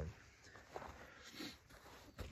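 Faint scattered rustling and handling noise over quiet outdoor background, after the tail of a man's drawn-out "um" at the very start.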